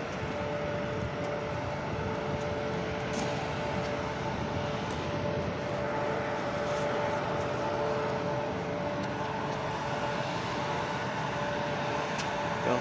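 A tanker lorry's diesel engine running at low speed close by: a steady drone with a faint, steady whine over it.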